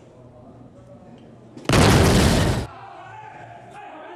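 Electronic dartboard machine playing a loud, explosion-like sound effect that lasts about a second, starting a little before the middle.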